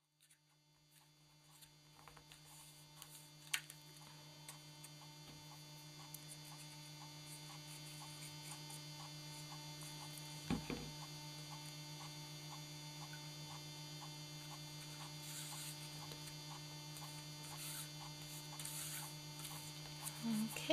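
Steady electrical mains hum with a faint, regular ticking, fading in from silence over the first few seconds. Two short knocks from paper and glue being handled stand out, one about three and a half seconds in and a louder one about ten and a half seconds in.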